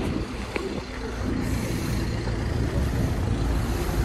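Street traffic noise: a road vehicle going by, the noise building a little about a second in and then holding steady.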